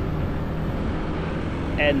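Motorbike engine and road noise while riding, a steady low rumble that does not change in loudness.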